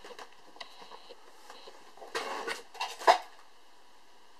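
Handling of a carp rig and its lead weight as it is picked up off a plastic bucket lid: a few faint clicks, then brief scraping and knocking about two seconds in and again near three seconds, the last the loudest.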